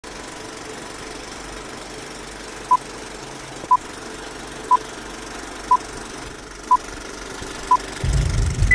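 Vintage film-leader countdown sound effect: a steady, rattling projector-and-crackle noise bed, with a short high beep once a second, six in all, starting about a third of the way in.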